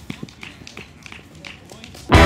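Quiet outdoor background sound: scattered light taps, irregular rather than in a rhythm, with faint distant voices.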